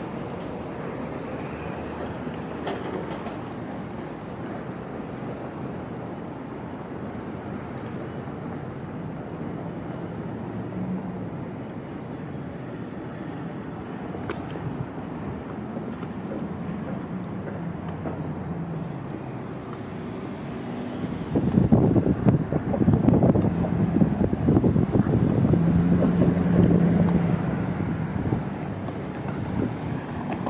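City street traffic going by steadily, with a louder vehicle passing for several seconds about two-thirds of the way through.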